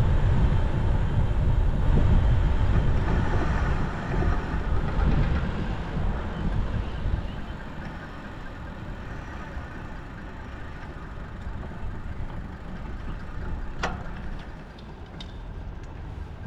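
Wind rumbling on a GoPro action camera as the bike rolls along, easing off after about five seconds as the bike slows to a stop, leaving a steady hum of road traffic. A single sharp click comes near the end.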